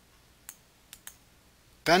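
Three short computer mouse clicks over near-silent room tone: one about half a second in, then two close together around one second.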